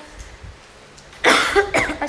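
A woman coughing: after about a second of quiet, two quick coughs a little past the middle, the first the louder.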